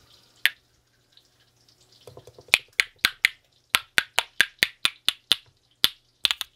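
Pair of laminated wooden spoons played as a rhythm instrument: one sharp click, then a run of clicks at about four a second.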